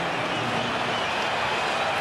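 Steady arena background noise in a basketball broadcast: an even hiss with no distinct bounces, whistles or voices standing out.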